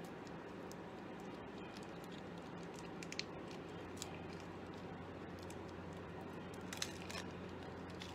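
Faint handling of a lipstick tube and its plastic seal being peeled off, with small sharp ticks about three, four and seven seconds in, over a steady low hum.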